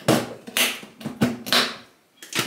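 Several short taps and knocks, about four in two seconds, from small objects being handled and set down.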